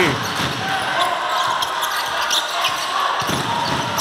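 Basketball arena ambience during live play: spectators' voices and a basketball bouncing on the hardwood court.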